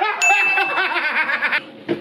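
A man laughing in pulsing bursts, with a short, steady, bell-like ding sound effect starting a fraction of a second in.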